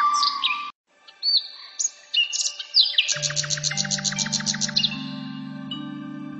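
A flute melody breaks off within the first second. After a brief silence, small birds chirp, with a quick run of about eight chirps a second from about three to five seconds in. Under the chirping a held synthesizer chord swells in steps.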